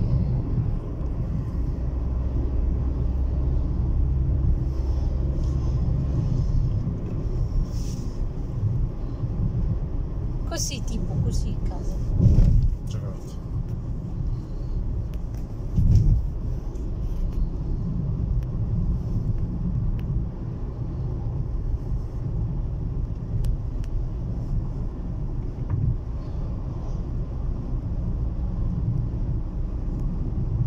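Road noise inside a moving car: a steady low rumble from the engine and tyres, with two heavier thumps a few seconds apart partway through.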